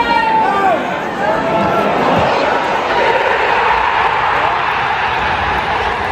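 Football stadium crowd breaking into a loud, sustained roar about two seconds in: the home crowd celebrating a goal. Shouting voices of nearby fans are heard at the start.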